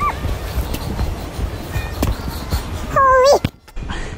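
Footfalls and camera handling noise as a hiker scrambles up a steep, rooty trail, grabbing roots by hand. About three seconds in there is a short, high-pitched vocal cry from one of the hikers, and the sound cuts out briefly just before the end.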